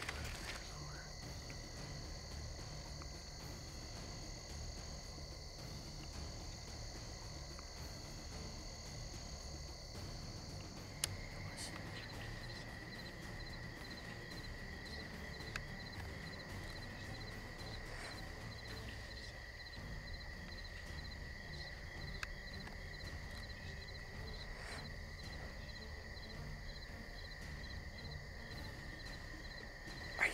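Night insects calling steadily in a chorus of several high, unbroken pitches; about 11 seconds in the chorus changes to a lower steady pitch with a faster pulsing one above it.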